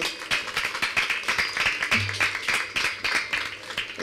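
Crowd applauding, a dense patter of many hand claps that thins out and dies down near the end.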